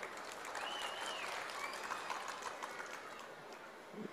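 Faint crowd applause, an even patter that slowly dies away toward the end.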